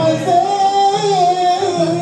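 A sung religious chant: a voice holds long notes that slide slowly between pitches, with no break.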